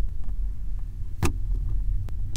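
Kinetic sand being pushed through a perforated metal plate and crumbling away, heard as a steady low rumble, with one sharp click a little past halfway.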